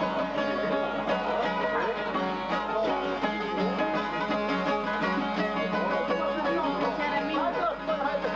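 Two çifteli, Albanian two-stringed long-necked lutes, played together in a steady, busy folk tune of rapid plucked notes.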